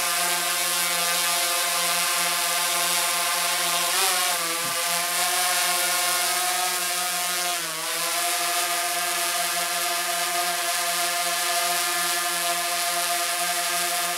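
DJI Phantom 3 Advanced quadcopter hovering, its four motors and propellers giving a steady, many-toned buzz while carrying the added weight of a strapped-on flashlight. The pitch wavers about four seconds in and dips briefly near eight seconds as the motors adjust their speed.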